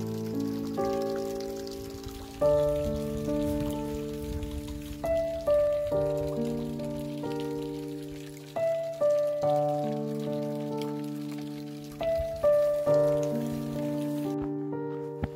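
Slow, calm background piano music: chords struck and left to ring, a new chord every couple of seconds, over a faint steady hiss.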